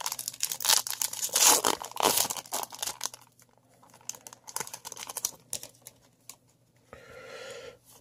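Foil wrapper of a 2018 Bowman baseball card pack being torn open and crinkled: dense crackling for about the first three seconds, then sparser crinkles.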